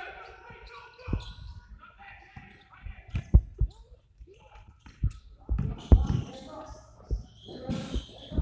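A basketball bouncing on a hardwood gym floor during play, in a run of irregular thuds, with voices in the background of a large gym.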